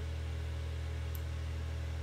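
Steady low hum with a faint hiss: the recording's background noise.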